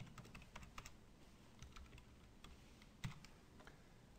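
Faint computer keyboard typing: scattered light keystrokes, with one sharper click about three seconds in.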